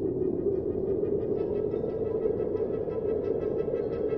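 Steady, dark ambient drone of a film soundtrack: a dense low hum with faint high sustained tones above it.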